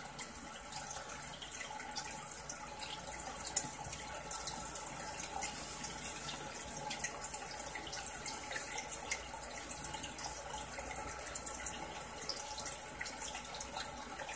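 Water trickling steadily in a crab tank, with many small drips and splashes.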